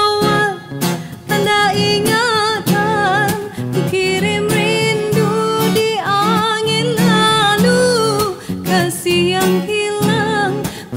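A woman singing a Malay Hari Raya song, holding wavering notes over an acoustic guitar that is plucked and strummed.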